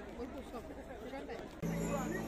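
Murmur of many voices talking at once over background music; about one and a half seconds in, louder music with steady low held notes comes in suddenly.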